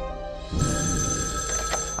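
Telephone bell ringing, starting suddenly about half a second in, over film-score music.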